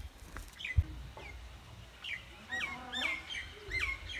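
Bird calls: a run of short chirps, each sliding downward in pitch, in the second half, with a single thump about a second in.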